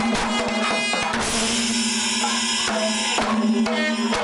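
Kerala panchavadyam ensemble: timila hourglass drums struck by hand in quick, dense strokes, with a steady low tone underneath. A bright wash of cymbals swells up in the middle.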